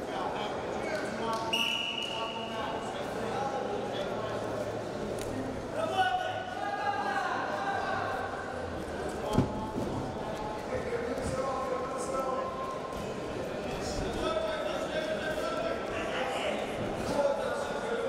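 Unclear shouting voices echoing in a large sports hall, from coaches and spectators. A referee's whistle sounds briefly about a second and a half in, restarting the bout, and a single sharp thud comes about nine seconds in.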